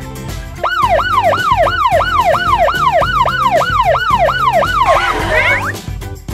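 Police siren sounding in quick falling sweeps, about three a second, starting just under a second in and stopping about five seconds in, over upbeat background music.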